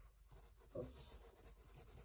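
Faint scratching of a graphite pencil shading on sketchbook paper, with a brief voiced sound just under a second in.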